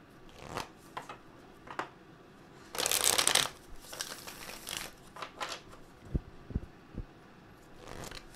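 A deck of oracle cards shuffled by hand: a few soft card snaps, then a loud riffle about three seconds in, followed by smaller flicks. Near the end there are three low thumps.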